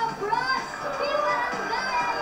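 A young girl's voice through a stage microphone, with music playing behind.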